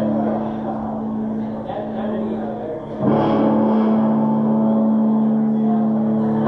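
Amplified electric guitars and bass from a live band holding a sustained, droning note. About three seconds in, a louder chord is struck and rings on.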